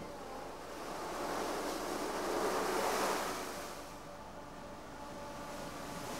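A rushing noise that swells to a peak about three seconds in and then fades again.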